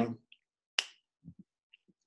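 A single sharp click about a second in, followed by a few faint small sounds.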